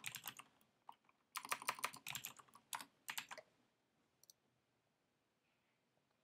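Typing on a computer keyboard: three short runs of quick key clicks that stop about halfway through.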